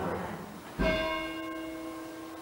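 A church bell struck once about a second in, its ringing tone holding and slowly dying away. Rung during the Words of Institution, at the consecration of the communion elements.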